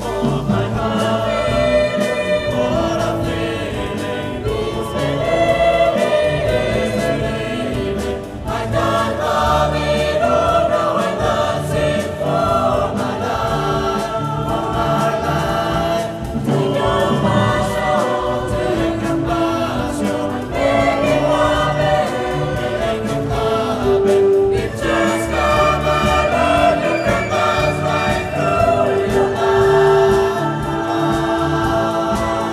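Live ensemble music: txistu players and a wind band, with a large choir singing along, playing steadily without a break.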